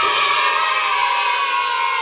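A music sting: one metallic, cymbal-like crash that rings on with many high overtones and fades slowly.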